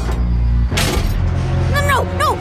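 Cartoon amusement-ride sound effect: a low mechanical rumble as the ride car starts moving, with a short sharp noisy burst about a second in, under background music. A brief vocal exclamation comes near the end.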